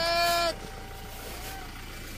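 A person's long, high-pitched shout, held for about half a second and ending abruptly. Only a low background noise follows.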